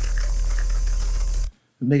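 Cartoon sound effect of a rift torn in space-time: a steady deep hum with a hiss above it, cutting off suddenly about one and a half seconds in. A man starts speaking just before the end.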